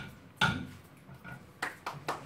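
One sharp knock about half a second in, then a few scattered hand claps near the end as applause starts after a motion is carried.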